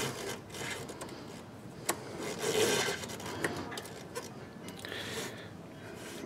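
Hands handling hoses, wiring and plastic parts in a car's engine bay: soft rubbing and rustling with a few light clicks, the sharpest about two seconds in.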